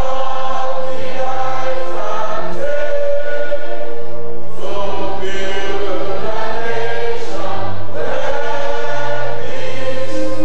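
A choir singing held notes in several voices, with a low bass line underneath.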